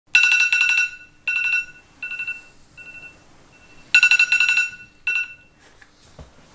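Electronic wake-up alarm ringing in groups of rapid high beeps: loud at first, fading over the next few seconds, then loud again about four seconds in.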